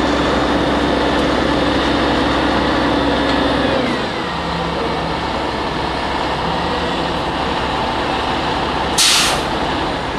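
Heavy flatbed truck's diesel engine running as the truck pulls through and away, its pitch and level dropping about four seconds in. Near the end comes a short, sharp hiss of air, typical of a truck's air brakes.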